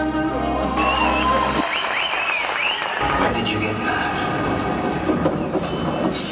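Show music ending on a held chord, then audience applause and cheering with shrill whistles, and the next music track starting about three seconds in.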